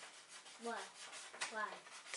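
Faint rubbing and handling noise from hands working a sewing needle and thread close over crocheted yarn, with a quiet voice asking "why?" twice.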